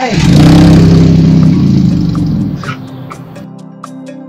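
A car engine starting up and revving. It is loud for about two and a half seconds and dies down about three and a half seconds in, with soft background music under it.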